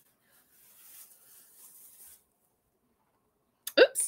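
Faint rustling of a plastic-wrapped fleece throw being handled. A woman starts speaking near the end.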